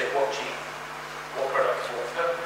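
A man speaking through a microphone in short broken phrases with brief pauses.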